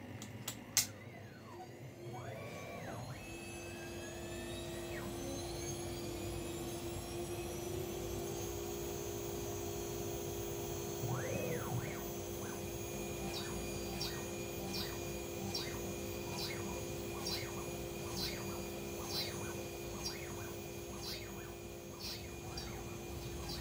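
Holzprofi 6090 CNC router starting its spindle: a whine that climbs in pitch over several seconds and then holds steady. Short whines rise and fall in pitch as the axis motors move the head, and in the second half a light tick repeats about twice a second.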